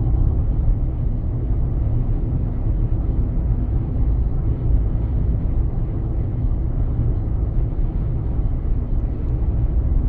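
Steady low road and engine rumble of a car driving at speed, heard from inside the cabin.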